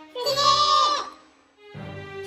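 A loud, high, wavering vocal squeal lasting about a second, followed by background music.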